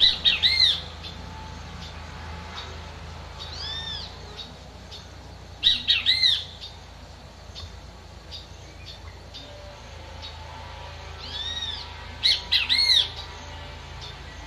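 A bird calling three times, about six seconds apart, each call a quick run of loud arched notes. A softer single arched note comes shortly before the second and third calls.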